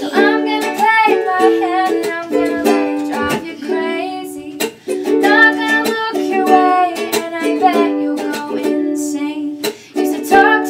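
Ukulele strummed in steady chords while a young woman sings a pop melody over it.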